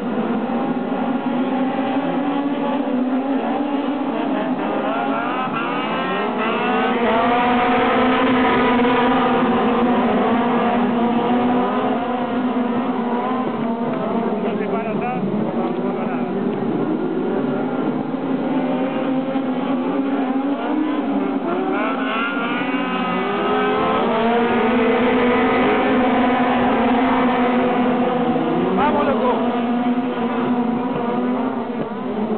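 A pack of midget race cars running on a dirt oval, several engines revving up and down together as they lap. The sound swells twice as the field comes closer.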